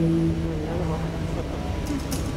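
A woman singing one long, steady low note, held over a low hum, with a guitar strum coming in near the end.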